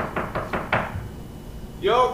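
A quick run of about six knocks, fading out within the first second, followed by a voice starting near the end.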